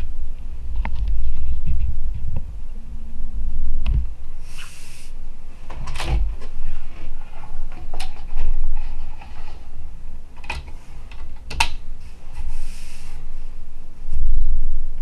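Handling noise as a relay-computer circuit board and a paper program sheet are shifted about on a wooden table: low bumping, several sharp knocks and clicks, and two short hissy scrapes.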